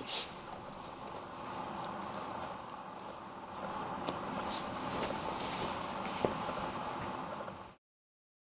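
Faint rustling and handling of knit sneakers being put on and laced, with a few soft clicks and light footsteps on a wooden floor over steady room noise. It cuts off abruptly near the end.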